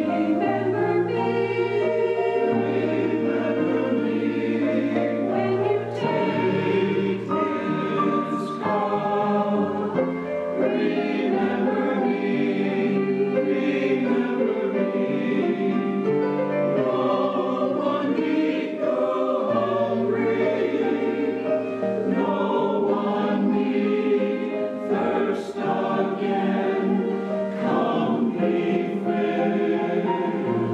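A church choir singing in harmony with long held chords, accompanied by piano with sustained low bass notes.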